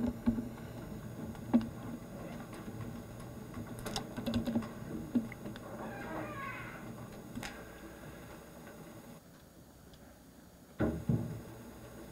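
Quiet room tone with scattered soft laptop clicks, and faint voices murmuring about halfway through. There is a short louder sound near the end.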